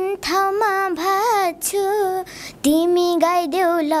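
A young girl singing a Nepali dohori folk verse unaccompanied, holding notes and bending them up and down in short phrases, with brief breaths between them.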